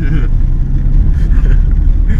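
Fiat 126p's air-cooled two-cylinder engine running as the car drives along, heard loud from inside the small cabin as a steady low rumble.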